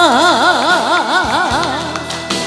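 Female vocalist holding the long final note of a Korean ballad line into a microphone, the pitch steady at first and then swinging in a wide, even vibrato, about four wobbles a second, before the note ends near the end. Backing music plays underneath.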